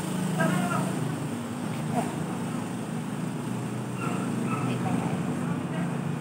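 Steady low drone of a motor-vehicle engine running nearby, with soft murmured speech now and then.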